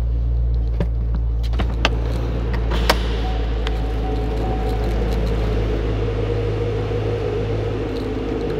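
Supercharged 6.2-litre V8 of a 2014 Chevrolet Camaro ZL1 idling steadily, with a few light clicks in the first three seconds.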